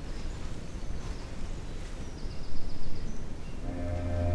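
Steady low hum and hiss of the room, with a faint high chirping trill in the middle. Sustained musical tones begin to swell in near the end.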